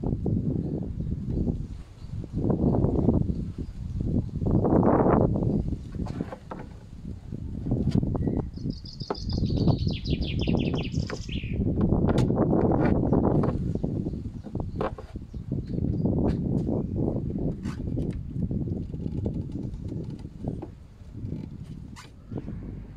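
A small bird sings a rapid, high trill for about three seconds midway through, over low rumbling noise that swells and fades. Scattered light clicks follow as a plastic washer-jet clip is worked onto a wiper arm.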